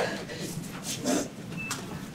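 Indistinct, murmured voices in a room with a few brief knocks and clicks of movement, and no clear words.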